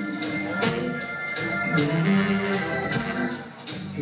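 Live blues band playing a short instrumental stretch between sung lines, with drum hits over held keyboard chords; the sound dips briefly near the end.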